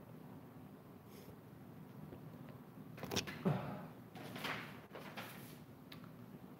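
Quiet room tone, then a few soft knocks and rustles about three seconds in, with more shuffling after: a phone being set down and a person settling into a chair.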